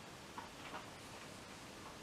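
Quiet room tone with a faint click about half a second in and a few soft small sounds just after, from a sip of whisky taken from a small tasting glass.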